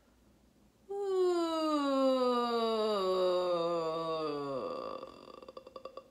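A woman's voice sounding a relaxed downward siren, a vocal exercise for lowering the larynx. About a second in she starts in the middle of her range and glides smoothly and slowly down to low notes, then fades out in a few uneven pulses near the end.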